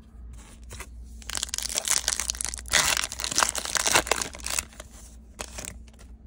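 Wrapper of a baseball card pack being torn open and crinkled, with the crinkling busiest two to four seconds in and a short rustle near the end.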